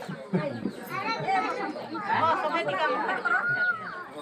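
Several people talking at once: the chatter of a seated gathering, with no single voice standing out.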